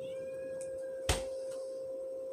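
A steady hum-like tone with a single short knock about a second in. A faint, thin, high tone sounds during the first second.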